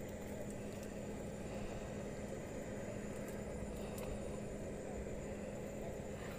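Steady low background rumble with a constant low hum, an even machine-like drone.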